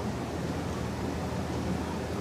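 Steady room noise between spoken phrases: an even hiss with a low hum underneath and no distinct events.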